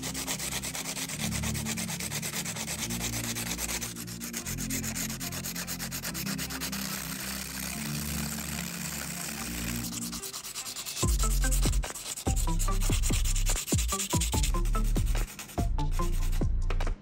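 A pencil's graphite lead rubbed rapidly against sandpaper: a fast, dry scratching as the lead is ground into powder. In the last five seconds or so, louder low thumps and knocks take over.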